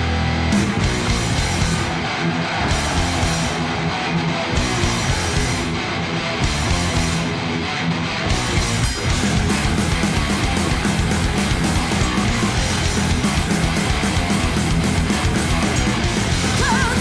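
Heavy metal band playing live: an instrumental passage of distorted electric guitars over fast, dense drumming, with no singing.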